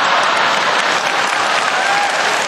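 Theatre audience applauding, a dense, steady clapping from a large crowd.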